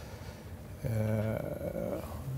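A man's drawn-out hesitation sound, a long "uhh" held at a steady pitch, starting about a second in after a short quiet moment.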